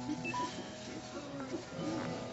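Faint live music as a song dies away: a held note, with a few short high tones about a third of a second in.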